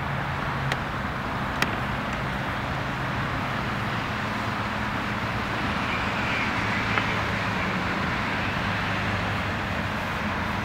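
Steady hum of road traffic with a low engine drone, and two brief sharp clicks within the first two seconds.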